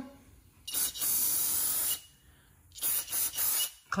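Aerosol brake cleaner sprayed in two hissing bursts, the first about a second long and the second shorter, about three seconds in, to clean leaked transmission fluid off the front hub and brake rotor.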